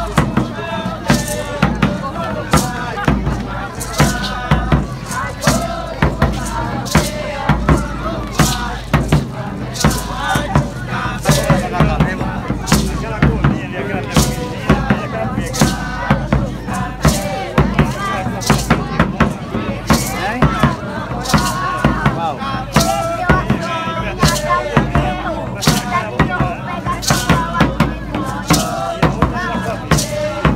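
Large stick-beaten frame drum played in a steady, even beat, with a group of voices chanting over it.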